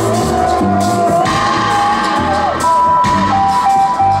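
Live reggae band playing, with bass and drums under a lead line. The lead holds a long note that slides up slightly about half a second in, then plays short repeated notes over a second held tone from about the middle on.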